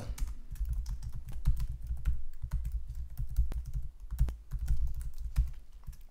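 Fast typing on a computer keyboard: a quick, irregular run of key clicks, each with a soft low thud, as a line of code is typed.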